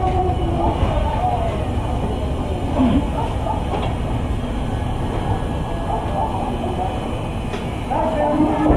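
A steady low rumble, with indistinct voices over it now and then.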